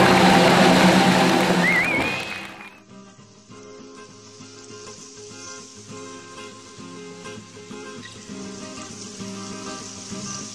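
An audience applauding over live music, with a short wavering whistle just before two seconds in. About two and a half seconds in, this cuts off and gives way to quieter instrumental background music with steady, sustained notes.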